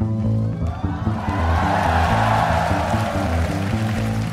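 Live band music with a repeating bass line driving the groove; a swell of noise rises and fades in the middle.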